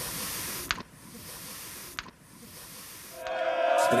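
Air hissing out of a bicycle tyre valve in three spurts broken by two short clicks, the last spurt weaker, as the tyre is let down. Music comes in near the end.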